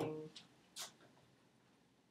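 A man's voice trailing off at the end of a word, then a brief hiss just under a second in, and quiet room tone after that.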